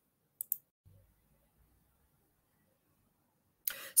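Two short, sharp clicks about half a second in, then near silence. A voice starts just before the end.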